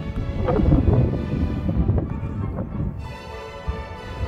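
Background music with wind buffeting the microphone, the low rumble of the gusts strongest in the first two seconds.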